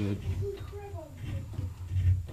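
Speech only: the end of a spoken word, then a short wordless voice sound, over low handling rumble.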